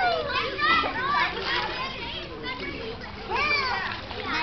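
Children's voices calling and chattering in high-pitched bursts, with a long rising-and-falling call about three and a half seconds in.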